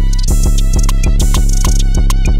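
Flint-style rap instrumental beat: a heavy, sustained bass under fast, evenly spaced drum-machine hits, with the high end cutting out briefly right at the start.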